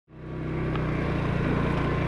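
Motorcycle engine running steadily while riding along the road, fading in over the first half second.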